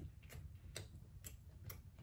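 Faint clicks of a mouth chewing food, close to the microphone, about two a second.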